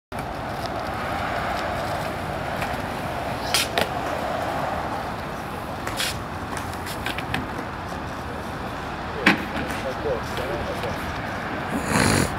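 Skateboard wheels rolling on concrete, with several sharp clacks of the board striking the ground; the loudest comes about nine seconds in.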